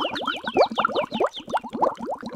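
Cartoon-style sound effect: a fast run of short rising 'boing' tones, several a second, with quick falling chirps above them.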